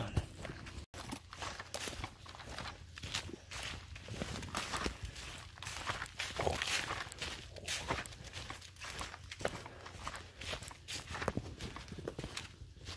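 Footsteps crunching through dry pine needles and dead leaves on a forest floor, at a steady walking pace of about two steps a second.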